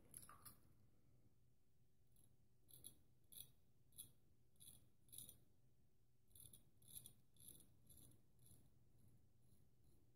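Faint short rasps of a full hollow ground straight razor cutting lathered stubble. There are two strokes at the start, then a steady run of about two strokes a second from about three seconds in until near the end.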